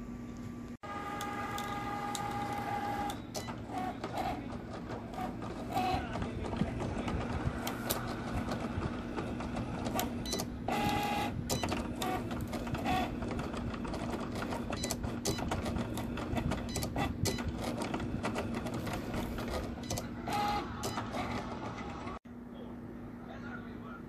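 Cricut cutting machine running a cut: its carriage motors whir and whine in shifting spurts, with frequent sharp clicks, starting about a second in.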